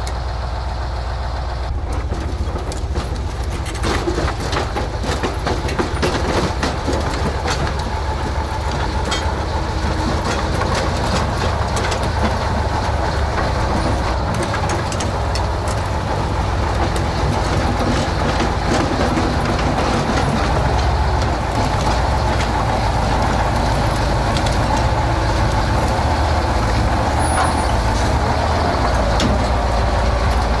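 KrAZ 6x6 army truck's diesel engine running steadily under load while towing a crawler tractor. Sharp metallic clanks come thickly through the first half, from the towed tractor's steel tracks and running gear.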